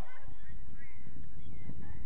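Steady low rumble of wind buffeting the microphone, with a few faint, distant pitched calls.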